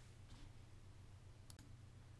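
Near silence with a low steady hum, and two faint computer-keyboard clicks close together about one and a half seconds in.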